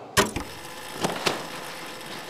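Handling noise from a motorcycle being taken hold of to be wheeled off its display mat: a sharp knock near the start, then two lighter clicks about a second in, over room hiss.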